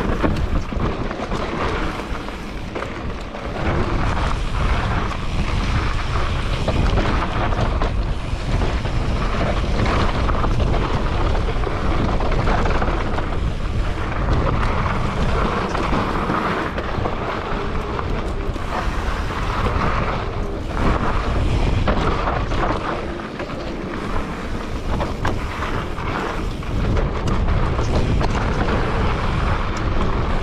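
Mountain bike ridden fast down a dirt and gravel singletrack: steady wind rumble on the microphone over tyre noise on the loose trail, with frequent knocks and rattles as the bike goes over bumps.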